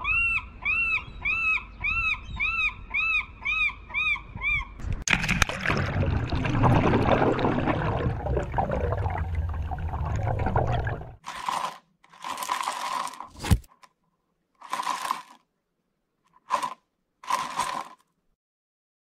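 Cartoon sound effects: about ten evenly repeated rising-and-falling chirps, roughly two a second, then a loud rushing splash lasting several seconds, then five or six short scraping bursts.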